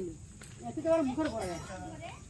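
People's voices talking, over a steady high chirring of night insects.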